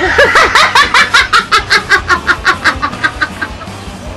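A man bursting into hearty laughter: a rapid run of short "ha" bursts, about eight a second, that grows weaker and dies away after about three seconds.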